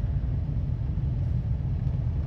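Steady low background rumble, with two faint light clicks partway through.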